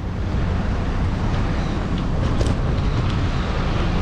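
Steady low rumble of wind buffeting the microphone, with road traffic noise underneath.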